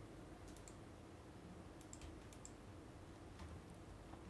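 Near silence: courtroom room tone with a low hum and a few faint, scattered clicks.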